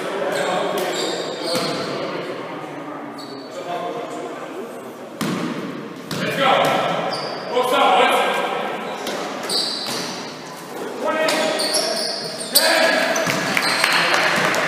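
Basketball bouncing on a wooden sports-hall floor, sharp impacts echoing in the large hall, with players' voices calling out in between.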